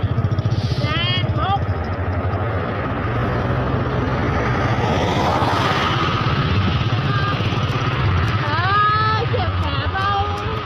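Motor scooter engine running steadily with wind and road noise while riding. Brief voices call out about a second in and again near the end.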